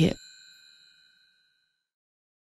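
The narrator's last spoken syllable, then a bell-like chime ringing out and fading away over about a second and a half.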